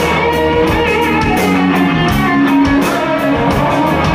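Live blues-rock power trio playing: an electric guitar, a Fender Stratocaster through an amplifier, plays a lead line over bass guitar and drums, with steady cymbal strokes.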